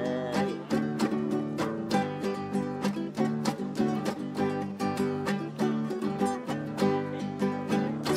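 Nylon-string acoustic guitar strummed in a steady rhythm of chords, an instrumental passage with no singing.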